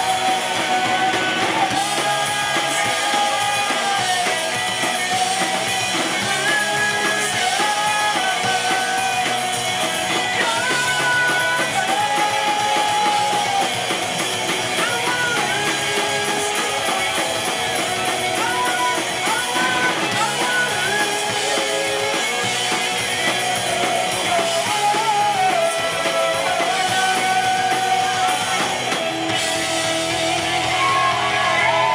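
Live pop-punk band playing: electric guitars and a drum kit, with sung vocals held over a steady beat. The music is loud and continuous throughout.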